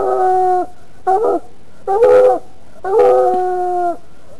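Coonhound bawling: four drawn-out, pitched howling calls about a second apart, the last the longest.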